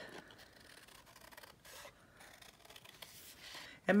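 Faint snips of scissors cutting through cardstock, a few short strokes.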